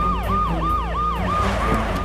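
Police vehicle siren in a rapid yelp: a quick run of falling sweeps, about four a second, that fades out near the end.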